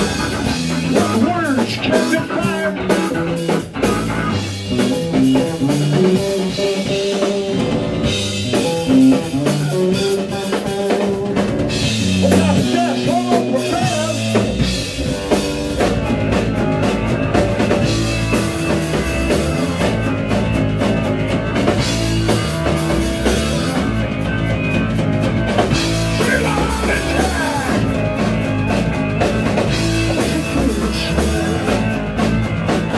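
A live rock trio playing an instrumental passage on electric bass, drum kit and keyboard, loud and continuous.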